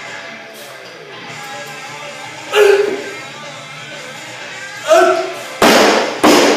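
Loaded barbell with bumper plates dropped onto the garage lifting platform near the end, a loud slam, then a second hit as it bounces. Before it come two loud shouts during the lift, over background guitar music.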